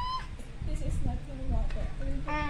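A toddler's high, drawn-out vocal "inoooom" that trails off just after the start, followed by faint low murmuring and handling sounds.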